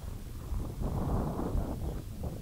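Wind blowing across the camera's microphone, a low, uneven rushing noise.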